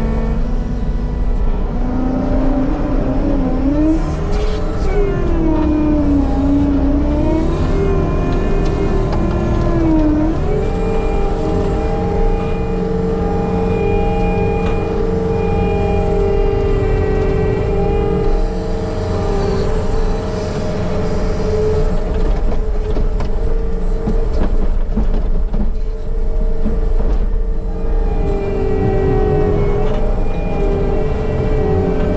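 Skid steer loader's engine and hydraulics running hard, heard from inside the cab. The pitch swings up and down for the first ten seconds as the loader works, then settles at a steady, higher speed, sagging briefly near the end.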